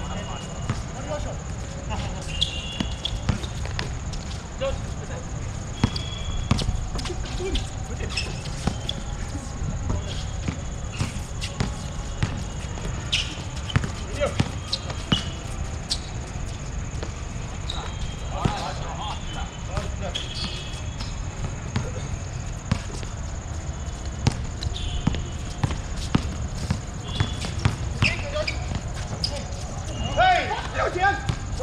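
A basketball bouncing and being dribbled on a hard outdoor court during a game: sharp, irregular knocks scattered throughout, with players' voices now and then.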